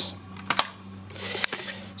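A few light clicks from handling, one about half a second in and another about a second and a half in, over a steady low hum.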